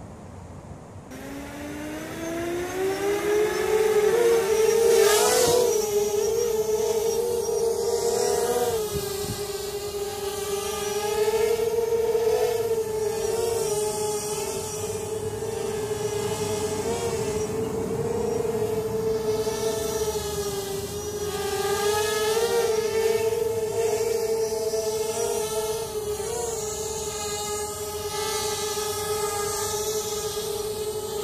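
Hovership MHQ quadcopter's electric motors and propellers spinning up about a second in, rising in pitch, then buzzing at a steady pitch that wavers up and down as the throttle is adjusted in flight.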